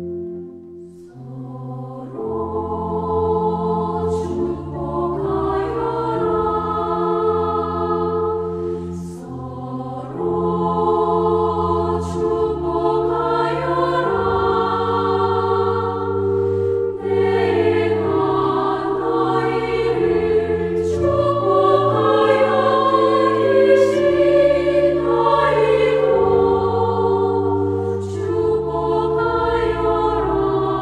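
Mixed choir singing a Korean-language Catholic hymn in four-part harmony, with sustained chords and moving parts. The singing enters about a second in, after a short pause.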